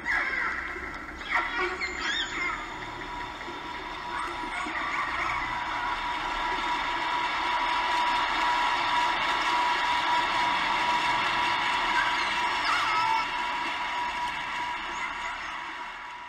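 Underwater hydrophone recording of a passing boat: engine and propeller noise with steady humming tones swells to its loudest in the middle and fades near the end. It drowns out faint dolphin whistles, which show through briefly in the first few seconds.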